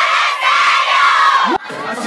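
A crowd of schoolgirls screaming and cheering in high voices, many at once. The sound cuts off abruptly about one and a half seconds in.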